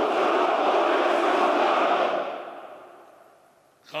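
Massed ranks of soldiers shouting their reply to the commander's greeting in unison. It is a loud, echoing shout of many voices that holds for about two seconds, then dies away.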